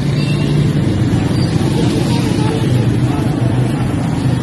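Steady low rumble of street traffic with a mix of background voices, the ambient noise of a busy market street.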